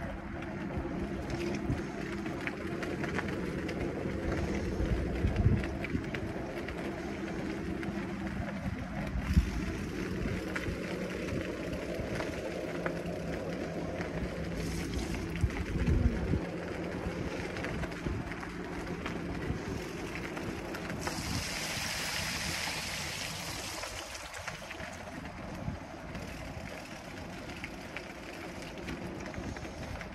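Surly Wednesday fat bike's wide tyres rolling on wet pavement, a steady hum that rises and falls in pitch with speed, over wind rumble on the microphone. There are a few thumps in the first half and a brief hiss about two-thirds through.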